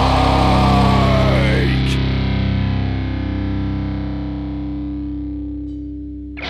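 Metalcore band playing heavy distorted music that stops short about two seconds in, leaving one distorted electric guitar chord ringing on and slowly fading.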